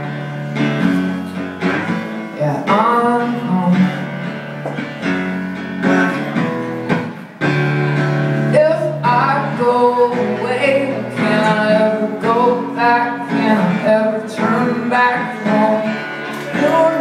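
Acoustic guitar strummed with a man singing over it, a live solo song. The playing drops away briefly about seven seconds in, then comes back in.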